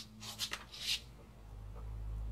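Faint rubbing and scraping as a hand handles the driveshaft under the vehicle, with a low rumble coming in near the end.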